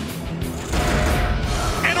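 A pack of NASCAR Cup stock cars running flat out, their V8 engines a dense drone that swells in about two-thirds of a second in, over a steady background music bed.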